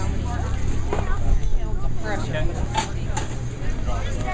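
Indistinct chatter of several people talking at once, over a steady low rumble.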